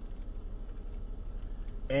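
A quiet pause inside a car cabin: only a low, steady hum, with a man's voice starting again at the very end.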